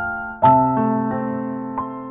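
Background piano music, slow and soft: a chord struck about half a second in rings out and fades, with a single note added near the end.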